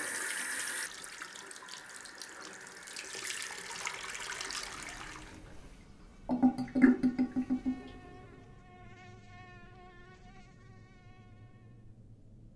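Beer glugging from a bottle into a sink under a running tap for about the first second, then softer running water until about five seconds in. About six seconds in comes a quick run of low pulses, followed by a wavering drone with several overtones that fades out near the end.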